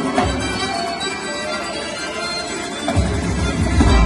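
Live folk band music with accordion, frame drum and a plucked lute. A heavy bass swells in about three seconds in.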